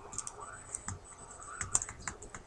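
Light, irregular clicks and taps from a hand moving close to the microphone, with soft mumbling underneath.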